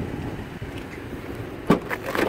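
Steady low background rumble, then a single sharp click near the end as the Opel Mokka X's tailgate release under the number plate is pressed.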